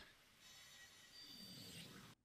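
Near silence: a faint, steady hiss with a few faint thin tones that grows slightly louder in the second half.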